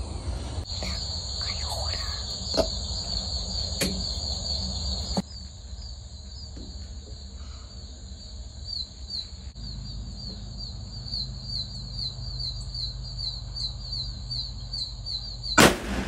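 A steady insect chorus of high, continuous buzzing, joined in the second half by a faster pulsed chirping, then a single loud rifle shot near the end.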